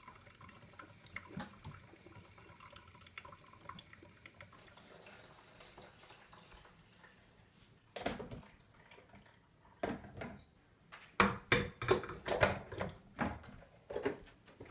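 Water poured from the glass carafe into the top reservoir of a drip coffee maker, beginning suddenly about eight seconds in, with splashing and sharp knocks of the carafe against the machine. Before that there are only faint, low sounds.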